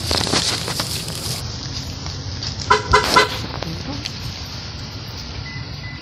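Outdoor background with a steady low rumble, a hiss over the first second and a half, and, about halfway through, three quick pitched toots.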